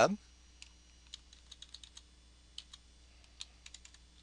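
Faint, irregular clicks of computer keyboard keys being typed, a dozen or so separate keystrokes.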